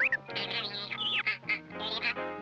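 Playful comic music: short, buzzy, nasal notes over held low notes, with one note bending in pitch about a second in.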